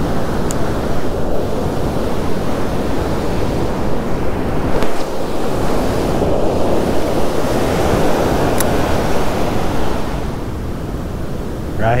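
Ocean surf breaking and washing up the beach, a loud steady rush that swells in the middle, with wind buffeting the microphone.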